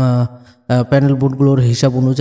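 A man speaking in Bengali narration, with one short pause near the start.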